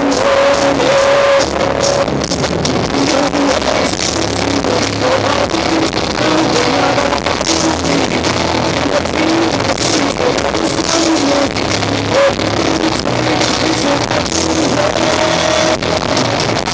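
Live rock band playing loudly, with electric guitars, drums and the singer's held vocal lines, heard from among the audience.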